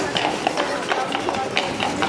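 Horses' hooves clopping on cobblestones in a quick, even rhythm of about four strikes a second as a pair of horses draws a carriage past, over a background of people's voices.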